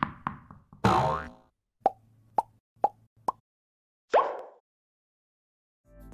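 Cartoon pop sound effects for an animated graphic: a few sharp clicks, a short swish about a second in, then four quick pops in a row, each a little higher in pitch, and a single rising swoop past the four-second mark.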